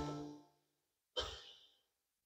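A held musical chord dying away in the first half-second, then near silence broken about a second in by one short breath.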